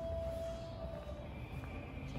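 Soft background music with long held notes, one note fading about a second in and a higher note taking over, over a low rumble.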